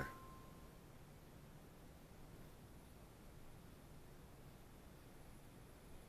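Near silence: faint room tone, with the tail of a thin steady tone fading out within the first second.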